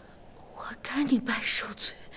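A few whispered words, breathy and hissing, starting about half a second in.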